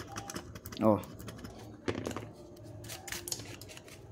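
A small brush scrubbing the solder side of a circuit board, a run of quick, irregular scratchy clicks, cleaning off dirt left after desoldering a capacitor.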